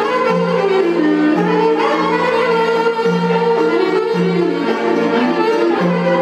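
Live Epirote folk dance music: a clarinet leads the melody over a steady bass beat of about one note a second.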